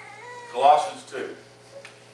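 A short wordless vocal sound from a person, loudest a little after half a second in and bending in pitch, with a weaker one just after, over a steady low hum.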